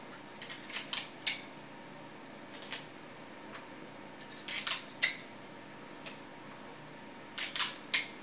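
Clear adhesive tape being pulled from a roll and torn off in short pieces: short sharp snaps and crackles in small clusters every few seconds.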